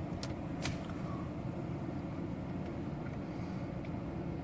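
Steady low hum inside a truck cab, with two faint clicks in the first second as a button on the tachograph is pressed.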